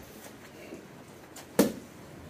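Faint background noise with a single sharp click about one and a half seconds in.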